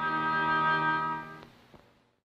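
Orchestral cartoon music ending on one held brass chord that dies away about one and a half seconds in.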